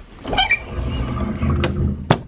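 Handling noise from a handheld camera rubbing against hair and clothing: a low rumble, with a sharp click near the end.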